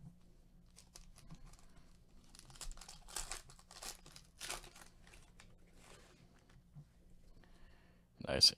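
Foil trading-card pack being torn open and crinkled by hand, a run of crackling tears loudest about three to five seconds in.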